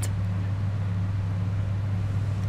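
Steady low hum with a faint hiss under it, unchanging throughout.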